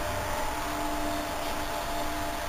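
Steady background hum and hiss with a faint, even held tone and no distinct events.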